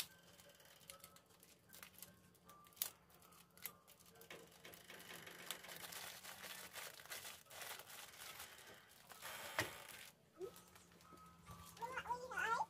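Faint crinkling of a thin plastic bag as neem flowers are packed and squeezed into it by hand, with scattered small clicks and one sharper click about nine and a half seconds in.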